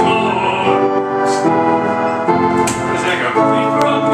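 Electric home organ playing held chords, the chord changing every second or so.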